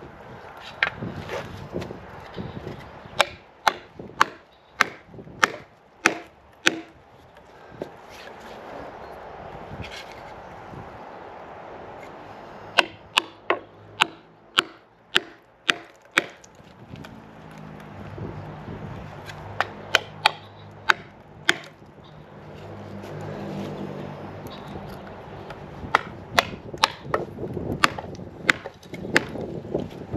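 Hammer blows driving wooden wedges into an ash log to split it along the grain: sharp wooden knocks in bursts of several strikes with pauses between. A faint low hum sits under the pauses about two thirds of the way through.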